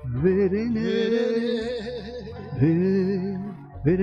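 A man singing an Esperanto song over a steady instrumental accompaniment, his voice coming back in at the start after a short pause in the vocal line.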